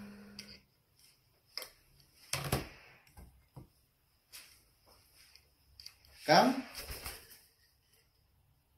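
A few short voice sounds, the loudest near the end rising in pitch, among soft clicks and rustles.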